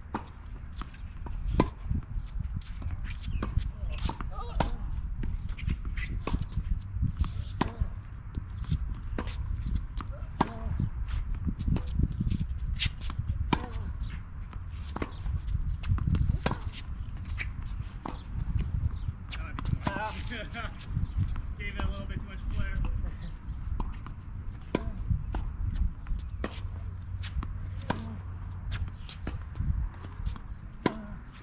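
Tennis rally on a hard court: a steady run of sharp racquet-on-ball strikes and ball bounces, a hit or bounce every second or so, over a low wind rumble on the microphone.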